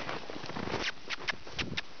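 Hoofbeats of several horses loping through packed snow: irregular crisp crunches, several a second, over soft thuds.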